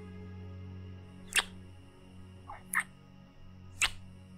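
Three short kissing smacks made with the lips close to the microphone, about a second and a quarter apart, over soft steady background music.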